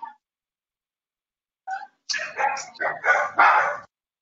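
A dog barking several times in quick succession, heard through an open video-call microphone. The barks start about halfway in, after a pause.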